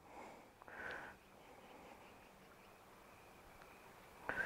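Near silence, with one faint breath or sniff through the nose about a second in.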